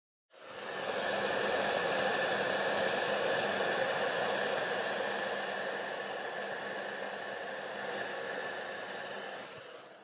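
Handheld hair dryer blowing steadily, a rushing air noise with a faint steady whine, switched on just after the start and building up over the first second.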